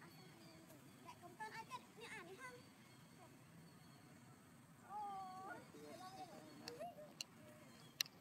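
Faint, wavering high-pitched calls of long-tailed macaques: a few short ones about a second and a half in and a longer one about five seconds in.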